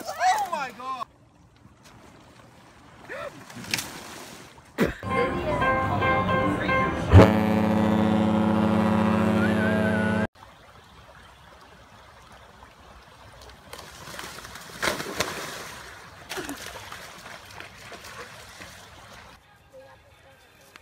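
A cruise ship's horn sounds one loud, steady, low note for about three seconds and cuts off suddenly, after a couple of seconds of music. Shrieking voices in the first second.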